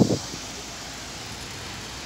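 Sea surf washing onto a sandy beach: a steady, even hiss.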